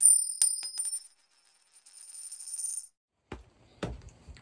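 A bright, coin-like jingling chime sound effect that starts abruptly, with a few sharp clinks over a high ringing that lasts about three seconds. Two short soft thumps follow near the end.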